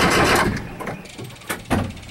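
1980 VW Vanagon engine being cranked by the starter, a fast, even pulsing that stops about half a second in without the engine catching. Two sharp clicks follow near the end.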